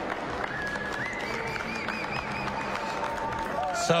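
Roadside marathon spectators cheering and clapping in a steady wash of crowd noise, with a high wavering tone standing out from about a second in until near the end.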